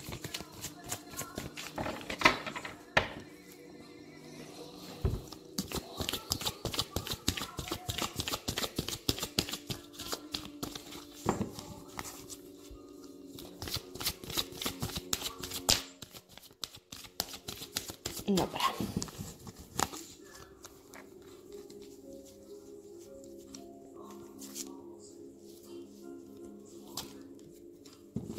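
A deck of oracle cards shuffled by hand, giving a dense run of quick card clicks and riffles that thins out in the second half.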